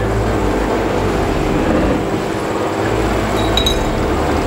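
A glass bottle clinks briefly, about three and a half seconds in, as it is lifted from the table, over a steady low hum.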